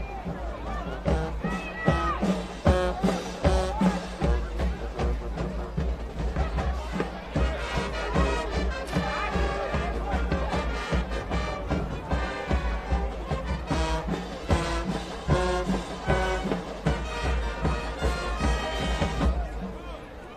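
Brass band music with horns over a busy drumbeat, which stops suddenly at the end.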